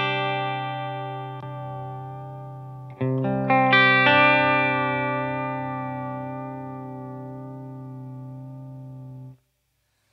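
Electric guitar played through a Diamond Vibrato pedal into two amps, the pitch gently wobbling up and down. Two strummed chords are left to ring out; the second comes about three seconds in, and it is cut off short near the end.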